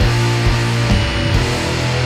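Instrumental passage of an indie punk rock song: electric guitars, bass and drums playing together with a steady beat and no vocals.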